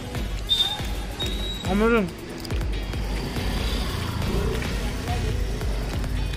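A man's closed-mouth appreciative "hmm" while tasting food, about two seconds in, over steady low background rumble and music.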